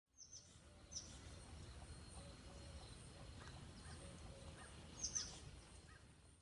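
Faint outdoor ambience with a few short, high bird chirps, the clearest just after the start, about a second in and about five seconds in.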